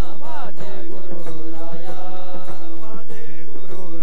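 Marathi varkari kirtan singing: a man's voice leads a devotional chant with a chorus over a steady drone, and small hand cymbals (taal) keep time.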